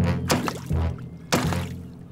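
Cartoon sound effect of a marlin moving in the water beside a small boat: two sudden hits about a second and a half apart, over background music.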